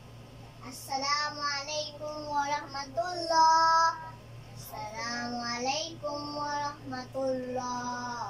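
A young child singing a melody in two phrases, with a long held note near the end of the first phrase and a short pause between them.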